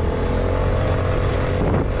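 Revolt Volta RS7's 125 cc GY6-type fuel-injected scooter engine running steadily under open throttle while riding, with wind and road rush over the helmet microphone.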